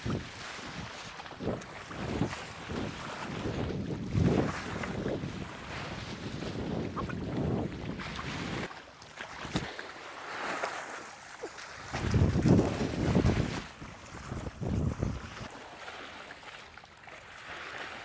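Wind gusting on the microphone over sea waves washing against rocks, in swells that come and go, loudest about four seconds in and again around twelve to thirteen seconds in.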